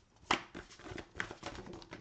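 Tarot or oracle cards being handled and laid on a table: a scatter of small taps and slaps, the loudest about a third of a second in and another a little past one second.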